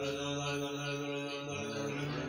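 A mantra being chanted: one voice holding a long, steady note that steps up in pitch near the end.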